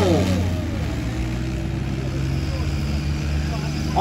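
Diesel engines of two Ghazi tractors running hard under heavy load in a tug-of-war pull, a steady low drone with slight shifts in pitch. A man's voice trails off at the start.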